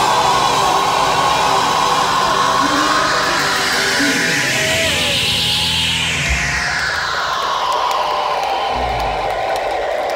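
Live ska band with electric guitars, drums, organ and saxophone playing the closing bars of a song. A noisy swell rises and falls in pitch around the middle, and low hits land about six and nine seconds in.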